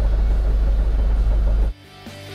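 Busy market ambience with a loud, steady low rumble on the phone's microphone that cuts off suddenly near the end. Quiet music with plucked strings then begins.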